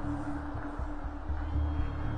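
Background music: a low, pulsing suspense underscore.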